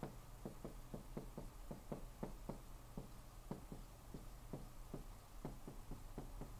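Marker writing on a whiteboard: faint, irregular taps and short strokes, a few a second, as letters and symbols are written.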